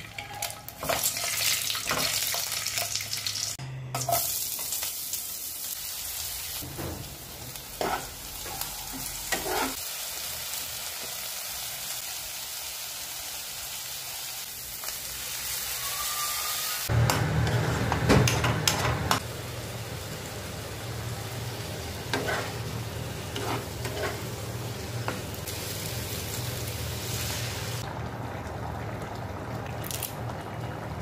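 Food frying in oil in a nonstick pan: a steady sizzle, first around boiled eggs, then around onions with tomato purée, broken by the clicks and scrapes of a spatula stirring against the pan. The sound changes abruptly at a couple of cuts, and a low hum runs under parts of it.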